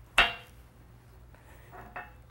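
A single sharp metallic clink with a brief ring just after the start, from work on a globe valve bonnet as its packing is pushed out of the packing chamber. A much fainter clink follows near the end.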